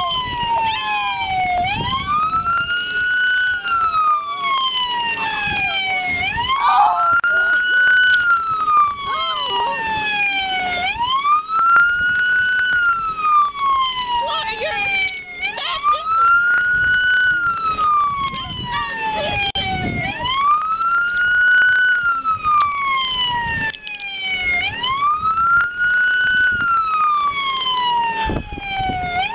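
Police siren on wail, its pitch rising quickly, holding briefly, then falling slowly, one cycle about every four and a half seconds. A few short sharp clicks come through in the middle and near the end.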